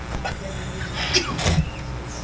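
Room tone of a meeting room: a steady low hum under faint, indistinct voices, with a few small knocks.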